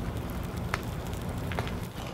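Small flames burning on a charred whole turkey that was set alight with hairspray: a steady hiss with a couple of sharp crackles.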